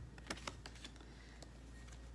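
Faint clicks and taps of tarot cards being handled and set down on a wooden table, several in the first second.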